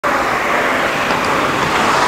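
Steady road traffic noise, an even hiss of passing vehicles' tyres and engines.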